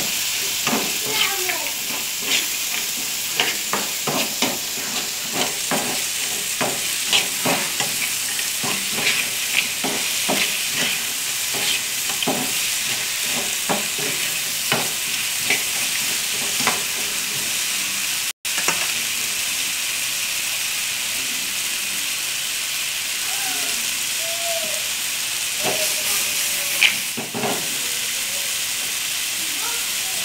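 Dried meat and tomato sizzling in a frying pan, with a metal spoon scraping and stirring through it in quick strokes for the first half. After that the frying sizzles on with little stirring, and there is one sharp knock near the end.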